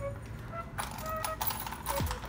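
A metal chain purse strap clinking and rattling as it is lifted and handled, a few short clicks.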